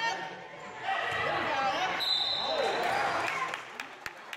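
Youth basketball game in an echoing gym: spectators and players shouting, a referee's whistle blowing once briefly about halfway through, then a basketball dribbling on the gym floor near the end.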